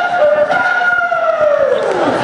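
A long, loud wailing call held on one pitch, then sliding steeply down near the end.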